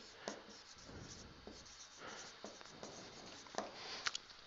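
Marker pen writing on a whiteboard: a run of short, faint strokes.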